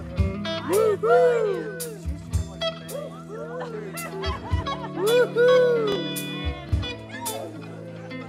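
Live rock band playing: an electric guitar lead bends notes up and back down in repeated wailing phrases over sustained Hammond organ chords. Drum and cymbal hits come at a steady beat.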